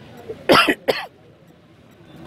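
A man's short cough: two quick bursts about half a second apart, the first longer.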